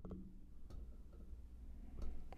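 Self-noise of the iRig Mic HD's built-in preamp with its gain turned up between twelve and three o'clock: a faint hiss over a low rumble. A few soft clicks come from fingers on the mic's gain wheel, the first right at the start and another under a second in.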